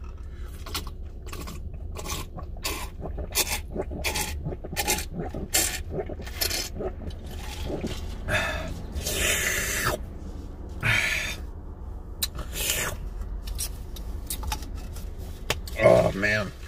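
Close-miked mouth sounds of chewing a mouthful of breakfast sandwich: irregular wet smacks and clicks, thickest in the first half, then a few longer, noisier mouth sounds, with a steady low hum underneath.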